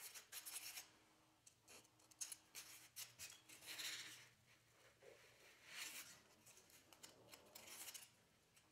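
Foam blocks being handled and slid across the plastic table of a hot-wire foam cutter: short, soft rubbing and scraping strokes with a few light taps as pieces are picked up and set down.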